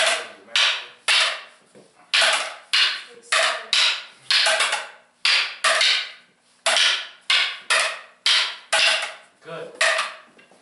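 Training sticks clacking together as partners trade double-stick strikes. It is a steady run of sharp clacks, about two a second, each with a short ring.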